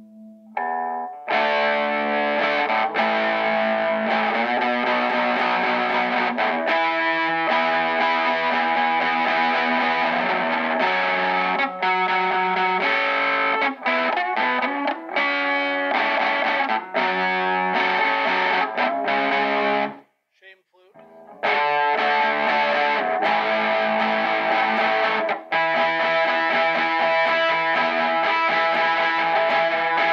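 Vintage V100 SVB Les Paul-style electric guitar with Wilkinson ceramic humbuckers, played with distortion through an amp: continuous notes and chords that break off for about a second two-thirds of the way through, then start again.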